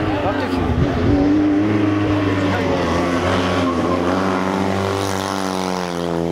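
Fiat 126p rally car's two-cylinder air-cooled engine revving hard as it drives up the stage, its pitch dipping and climbing again a couple of times and rising steadily toward the end.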